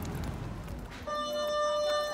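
A steady electronic tone, one unwavering pitch, starts about halfway in and holds.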